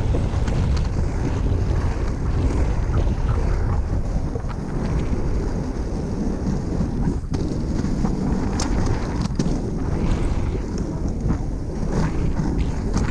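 Wind buffeting a camera microphone while inline skates with 110 mm wheels roll along asphalt, giving a steady rumble underneath. A few sharp clicks come in the second half.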